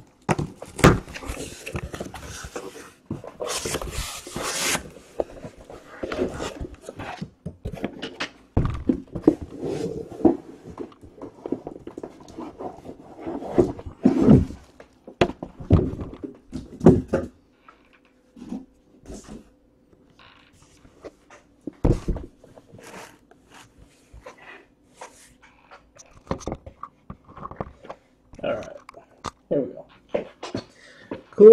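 Cardboard shipping case being cut open and a card box handled: a stretch of scraping and tearing in the first few seconds, then scattered knocks, rustles and taps as the box is lifted out and set down.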